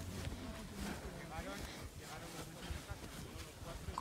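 Faint voices of people talking some way off, over a low outdoor background.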